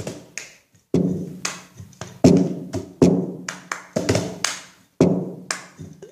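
Rhythmic percussive taps opening a song's music, each hit ringing out briefly with a low pitched tone, about one strong beat a second with lighter taps in between.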